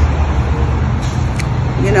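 Steady low hum of a nearby vehicle engine running, with a faint click a little past halfway.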